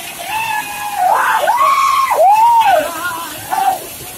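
Several men shouting in long calls that rise and fall in pitch, loudest in the middle, over water rushing and splashing through an elliptical impulse turbine.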